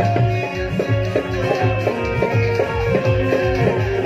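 Live stage-band music: a keyboard playing a stepping melody over a steady drum beat, with no singing.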